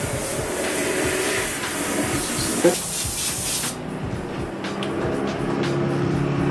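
Airbrush spraying paint, a steady hiss of air that cuts off suddenly about two-thirds of the way through.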